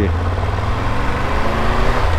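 Triumph Tiger 1200 GT Explorer's inline three-cylinder engine pulling under acceleration as the bike rides off, its pitch rising steadily, with wind rumble on the microphone.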